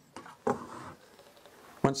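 Light handling knocks of a stainless-steel oxalic acid vaporizer being moved and set upright on a stone countertop, a short one about half a second in and a sharper click near the end. A man starts talking just before the end.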